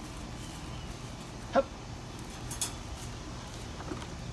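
A dog gives one short, pitched whine about a second and a half in, then a light metallic clink follows about a second later as it goes into a wire crate.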